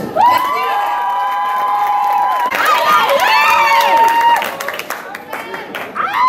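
Audience cheering, with several voices holding long, high whoops, then shouts that rise and fall in pitch, and some scattered clapping near the end.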